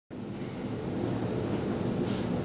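Steady low background noise of a room, an even rumble with no distinct events, starting just as the recording begins.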